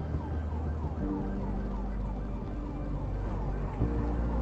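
A siren in a fast yelp, a short falling wail repeating about three times a second, over held music chords that change about a second in and again near the end.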